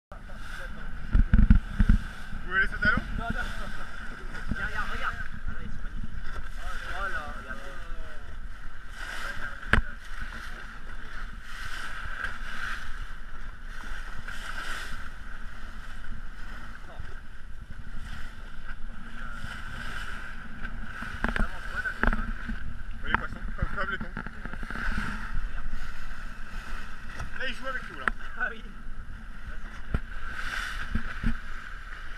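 A motorboat underway at sea: a steady engine drone with water rushing past the hull and wind on the microphone, broken by a few short knocks.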